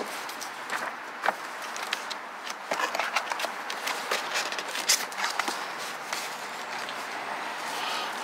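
Cardboard packaging being handled: irregular scrapes, rustles and light knocks as a cardboard insert is pressed on and lifted out of a box, over a steady background hiss.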